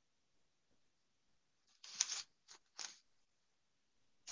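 A Chinese calligraphy brush scraping across paper in three short strokes, starting about two seconds in, the first the longest and loudest.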